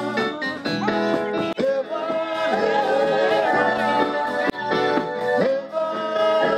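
Live band music with a singing voice gliding over the instruments.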